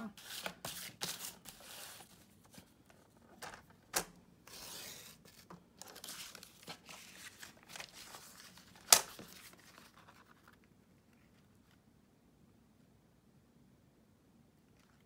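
Sheets of paper rustling and sliding as they are handled and shifted on a cutting mat and paper trimmer, with a few sharp taps. The loudest tap comes about nine seconds in, and the handling stops about ten seconds in.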